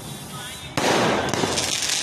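Fireworks being set off: a sudden loud burst about three-quarters of a second in, followed by a dense high hiss that carries on.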